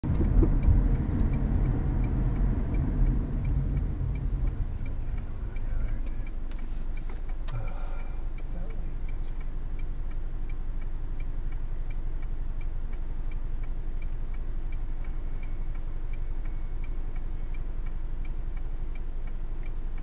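Car driving with low road and engine rumble that drops away about five seconds in as the car comes to a stop, leaving a steady idle hum. Over the hum the turn-signal relay ticks at an even rate.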